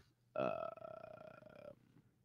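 A man's drawn-out "uhh" of hesitation, held for over a second and trailing off, quieter than the talk around it.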